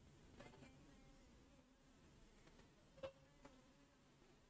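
Near silence: faint room tone, with a faint click about three seconds in.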